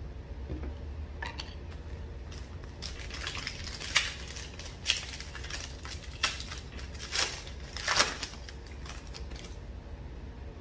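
A Panini Prizm trading-card pack's foil wrapper being handled and torn open, with a run of sharp crinkles and crackles; the loudest come about four and eight seconds in.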